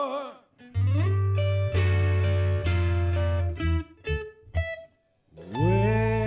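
Live blues-rock band with electric guitar, bass guitar and drums playing loud full-band chords over a heavy bass note. The chords break into a few short stabs with brief silences between them, then slide upward into a long held chord.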